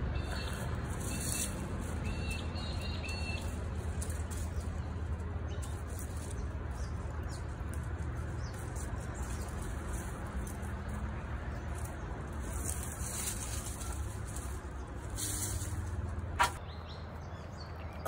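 Birds chirping in the background over a steady low rumble, with a single knock near the end.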